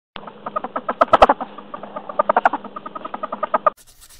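A rapid chattering run of short animal calls, about ten a second, which cuts off abruptly near the end and is followed by a faint swish.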